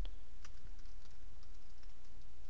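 Computer keyboard typing: a run of light, irregular key clicks as code is entered, over a steady low hum.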